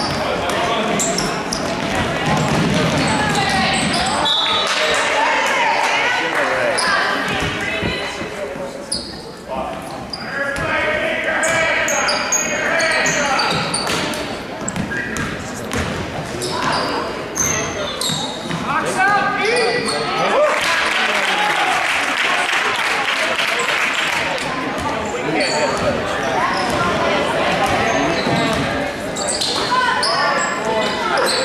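Basketball game sounds in a school gym: a ball dribbled on the hardwood floor, short sneaker squeaks, and spectators' and players' voices echoing in the hall throughout.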